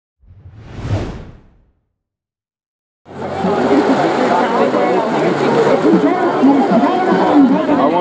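A brief whoosh that swells and fades, a moment of silence, then the steady chatter of a baseball stadium crowd from about three seconds in.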